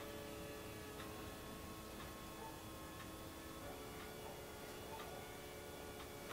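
Faint ticking, about one tick a second, over faint steady tones that shift once partway through, in a quiet room.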